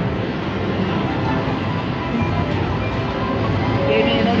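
Reelin N Boppin slot machine playing its bonus music as the free games are retriggered, over a steady casino din.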